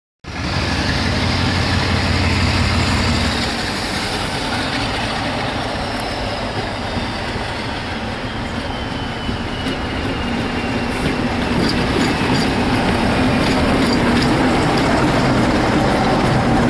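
Class 47 diesel-electric locomotive hauling coaches past at close range, its Sulzer twelve-cylinder engine running loud and steady. A thin whistle falls slowly in pitch through the first half, with a few clicks later on.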